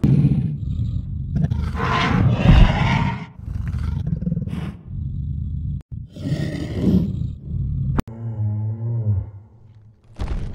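Recorded dinosaur roars and growls from a Google 3D augmented-reality armoured dinosaur model: a run of separate loud calls of a second or two each. About eight seconds in comes a lower, steadier call that holds one pitch.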